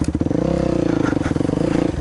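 Dirt bike engine running at low, fairly even revs, with a rapid pulsing beat to its note; the pitch dips slightly just after the start, then holds steady.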